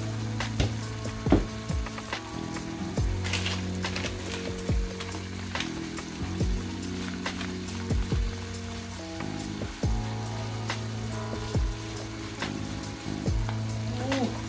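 Food frying in a pan on a gas stove, sizzling steadily with scattered sharp pops and clicks.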